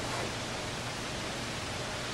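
Steady, even hiss with nothing else in it: the background noise of the recording between spoken phrases.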